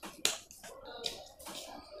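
Sharp clicks and light knocks of plastic and metal parts being handled as the auxiliary side handle is fitted onto an impact drill, the loudest click about a quarter second in and a few smaller ones about a second later.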